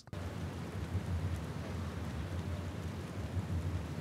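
Steady background noise, an even hiss with a low rumble underneath and no distinct events.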